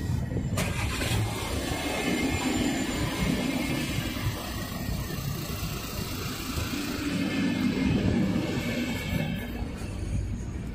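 Double-deck passenger coaches of an arriving night train rolling slowly past: a steady rumble of steel wheels on the rails, with a sharp clunk about half a second in.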